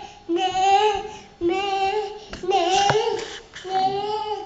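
A young girl singing in about four drawn-out phrases, each held for about a second with short breaks between.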